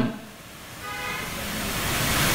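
A rushing noise that swells steadily louder through a pause in a man's amplified speech, with a faint tone about a second in.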